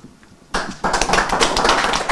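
A small group of people applauding in a small room: dense clapping that starts about half a second in.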